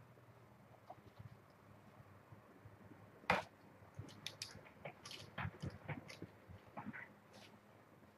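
Faint, scattered clicks and taps from handling things at a desk: one sharper click about three seconds in, then a run of smaller irregular clicks.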